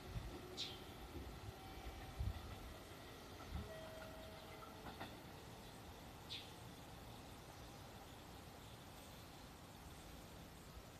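A departing JR Central 311 series electric train rumbling faintly in the distance, fading out over the first few seconds. Two short high bird chirps sound, about half a second in and about six seconds in.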